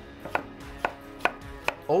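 A kitchen knife slicing through a sweet Vidalia onion and tapping down on a wooden cutting board: four crisp cuts, about half a second apart.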